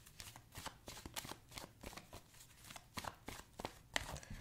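A deck of oracle cards being shuffled in the hands: an irregular run of soft, quick card clicks and flutters, several a second.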